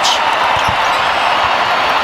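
Basketball dribbled on a hardwood court, a few bounces heard over steady arena crowd noise.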